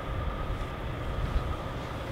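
Idling diesel semi-truck: a steady low rumble with a faint, steady high whine over it.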